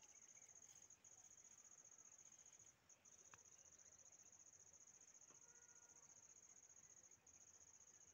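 Faint, steady high-pitched trill of crickets in the grass, broken by a few brief pauses.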